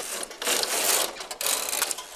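Flatbed knitting machine carriage being pushed across the metal needle bed, a clattering mechanical run in two sweeps with a short gap between them.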